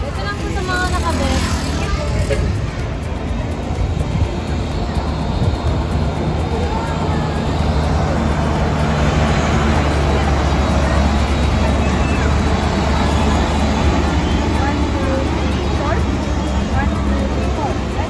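A heavy FAW cargo truck's diesel engine running close by, its low sound strongest about halfway through, with people's voices over it.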